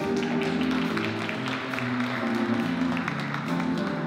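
Middle-school jazz band playing: saxophones over a moving bass line, with a steady cymbal beat from the drum kit.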